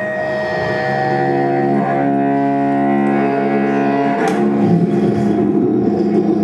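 A cello bowed in long, sustained low notes with a rich, buzzing tone. About four seconds in a sharp click breaks the held note, and the bowing turns rougher and scratchier.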